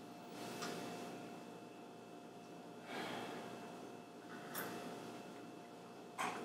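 A few faint sips and swallows of milk from a glass, with soft breaths through the nose, over a thin steady electrical hum.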